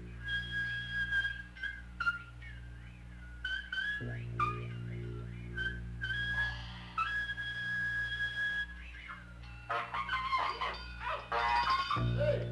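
Live jazz: a high, flute-like wind instrument holds long notes and slides between them over a steady low drone. Near the end, busier, denser notes crowd in.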